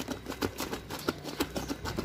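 Water splashing and sloshing in a plastic tub as a hand stirs washing powder in to dissolve it, a quick irregular run of small splashes.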